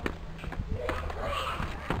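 Motorcycle engine running at low, steady revs close by: an even low hum.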